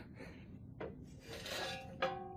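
A faint click, then a low metallic scrape with a light ringing near the end as a steel jack stand tips and lifts off a metal work table.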